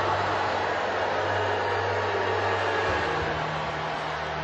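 Large studio audience making a loud, sustained crowd roar in reaction to a contestant's rejection, over a low sustained music drone that steps up in pitch about three seconds in.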